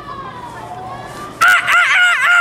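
Soft voices murmuring, then about one and a half seconds in a loud, high-pitched vocal call breaks out, its pitch wavering up and down as it is held.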